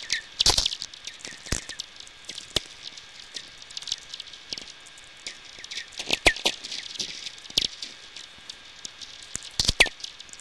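VLF radio receiver audio of natural radio emissions: a busy, irregular crackle of sferics, the clicks from distant lightning strikes, over a steady hiss. Many clicks end in a short falling ping (tweeks), with the loudest about half a second in, around the middle and near the end.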